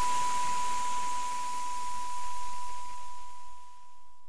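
A steady pure electronic tone held over a hiss, the hiss fading away near the end, as an electronic track closes.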